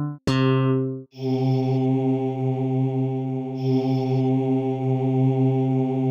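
Orkid Singularity software synthesizer playing test notes. A short plucked, guitar-like note dies away within a second. Then a single long held note with a breathy, voice-like tone carries on steadily.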